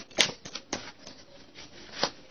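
Tarot cards being handled: a sharp click just after the start, then a few lighter clicks and taps within the first second, then only faint rustling.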